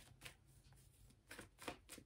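Tarot cards being handled: a few brief, faint rustles and flicks of card against card as the deck is worked and a card is drawn.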